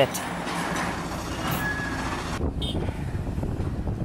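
Diesel engine of a long-reach hydraulic excavator running with a steady low rumble as it digs and dumps sandy earth. The hiss above the rumble drops away about halfway through.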